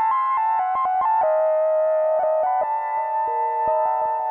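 Instrumental music on a synthesizer-like keyboard: a quick stepping run of short notes over sustained tones, settling into a held chord, with a new lower note entering about three seconds in.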